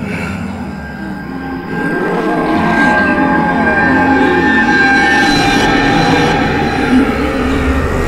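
Many overlapping wavering moans and wails, like a group of infected 'zombies' approaching, growing louder about two seconds in.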